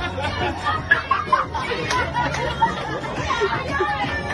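Crowd chatter: many people talking at once, voices overlapping into a busy babble.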